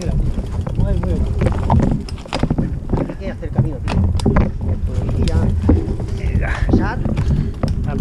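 Mountain bike rolling over a dirt forest trail, filmed from the rider's camera: heavy wind buffeting and tyre rumble, with frequent rattles and knocks from the bike over the rough ground. Brief voice fragments come through now and then.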